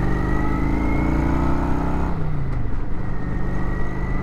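Kawasaki Vulcan 900's V-twin engine running at road speed on the move, its note rising slightly for about two seconds, then changing and dropping back, with wind noise over the microphone.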